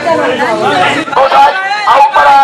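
A man's voice amplified through a handheld megaphone, speaking loudly with brief breaks.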